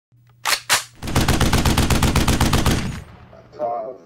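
Gunfire: two single shots a quarter second apart, then a rapid automatic burst of about ten rounds a second lasting about two seconds.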